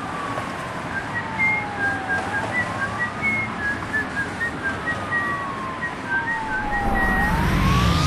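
Siren sound in a dance-remix intro: one tone sweeping slowly down and back up in pitch, twice, with short high whistle-like blips over a steady hiss. Low bass swells in near the end as the track starts.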